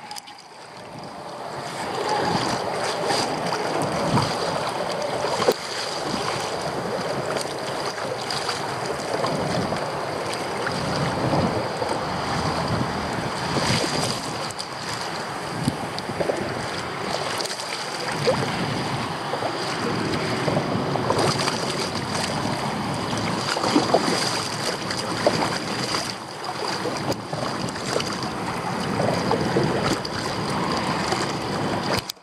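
Wind buffeting the microphone and choppy water lapping and slapping against a plastic sit-on-top kayak's hull, with frequent small irregular slaps and splashes.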